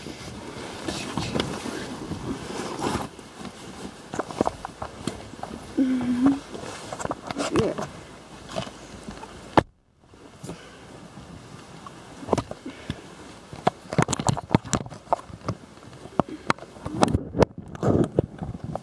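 Handling noise from a camera held against a nylon jacket: irregular rustling of fabric with many sharp clicks and knocks, busiest near the end, and a short vocal sound about six seconds in. The sound cuts out briefly just before the middle.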